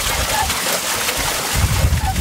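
Stream water rushing through a stone channel and splashing over the paddle wheel of a water-driven Tibetan Buddhist prayer wheel, a steady loud rush. A faint short squeak near the start, part of a squeak that returns about every second and a half to two seconds.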